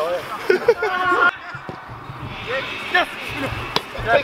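Men's voices calling out, then a single sharp thud near the end of a football being kicked.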